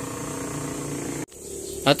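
Steady background machine hum made of several steady tones, which cuts off suddenly a little past halfway; a man's voice begins just at the end.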